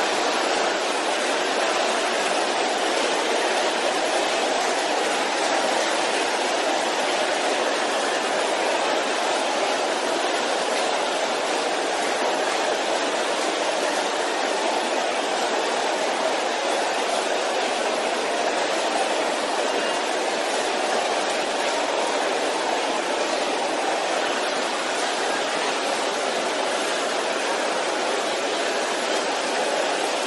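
A large congregation praying aloud all at once: a steady, dense roar of many voices with no single words standing out.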